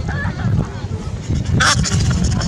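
A single short, sharp call from a macaque near the end, over a steady low background rumble.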